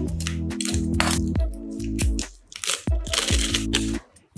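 Background music with a steady beat, over crinkling of plastic bubble wrap as it is cut open with a utility knife; the crinkling comes in bursts, most strongly about a second in and again near the end.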